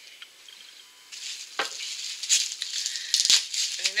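Plastic bubble wrap rustling and crinkling as a wrapped nail polish bottle is handled and unwrapped, starting about a second in, with several sharp clicks and crackles through it.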